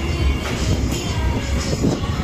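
A spinning fairground ride running: a steady mechanical rumble from its machinery, under loud music with heavy bass playing from the ride's sound system.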